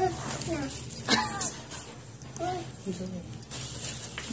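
Short, quiet voice sounds, a few brief murmurs or squeals spread out with pauses between them, and a sharp click about a second in.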